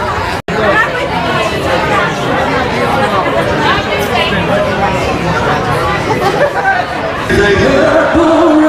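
A crowd of many people talking at once, a dense babble of voices. Near the end it gives way to live rock music with singing.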